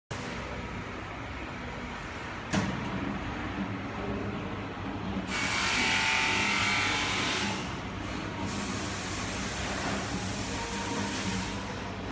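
Bottle flame treatment machine running with a steady motor hum, a sharp click a little over two seconds in, and a louder hiss lasting about three seconds from about five seconds in.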